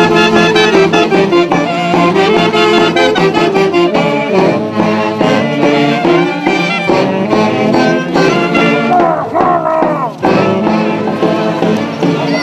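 Traditional Andean music for the Huaconada dance, played by a wind ensemble in a quick run of notes.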